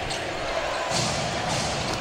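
Basketball arena crowd noise during live play, with a ball bouncing on the hardwood court.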